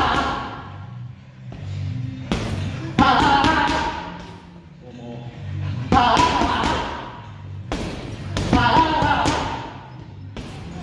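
Boxing gloves hitting focus mitts, sharp hits every few seconds, some in quick combinations of two or three, over background music.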